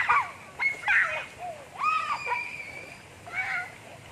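Children's high-pitched calls and squeals: several short cries, one after another, some rising and falling in pitch.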